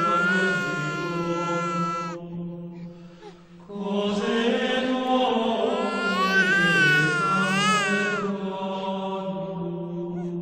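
Eerie horror-style soundtrack: a steady low drone with a high, wavering wordless wail over it. The wail is held for the first two seconds, then fades. It swells again in the second half, rising and falling in pitch.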